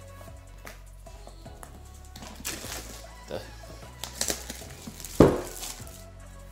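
Plastic shrink wrap being torn and pulled off a cardboard board-game box, crackling in short bursts, with a sharp knock of the box a little after five seconds, over steady background music.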